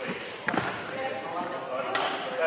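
A single sharp hit of a badminton racket on a shuttlecock about a quarter of the way in, echoing in the sports hall, followed by quiet voices.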